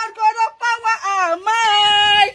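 A woman's high-pitched, sung wailing: several long, wavering notes with short breaks, the last held longest near the end.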